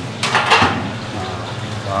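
A short, loud scraping rustle about a quarter of a second in, from chicken and potato slices being handled in a stainless-steel mixing bowl, followed by quieter handling noise.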